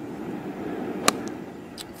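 A golf club striking the ball on a fairway approach shot: a single crisp, sharp click about a second in, over faint steady outdoor background noise.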